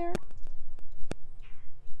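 A faint, short descending chirp from a hummingbird about one and a half seconds in, with two sharp clicks before it over a steady low rumble.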